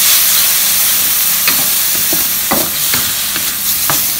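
Pork mince, chili and onion sizzling hard in a hot steel wok, stir-fried with a wooden spatula. The steady sizzle is broken by a few sharp scrapes and taps of the spatula against the metal.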